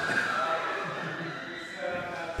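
An indistinct person's voice, held tones trailing off and growing quieter.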